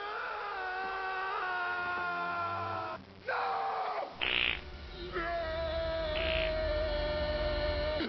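Long, held screams from open-mouthed people, steady in pitch, with a short break about three seconds in and a lower held scream in the last three seconds.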